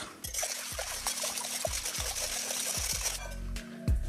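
Wire whisk rapidly beating raw eggs in a glass bowl, a wet liquid whisking that stops about three seconds in. Soft background music plays underneath.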